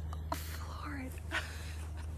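Soft, breathy laughter and quiet voices of a man and a woman, over a steady low hum.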